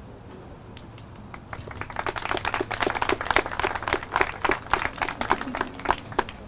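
A small audience applauding with many separate, distinct hand claps. The applause starts about a second and a half in and grows fuller.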